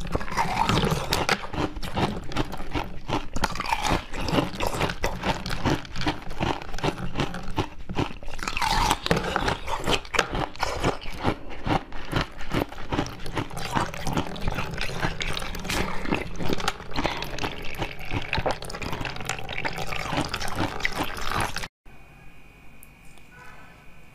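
Close-miked biting and chewing of frozen green basil-seed ice: a dense, continuous run of crisp crunches and crackles with wet mouth sounds, stopping abruptly near the end.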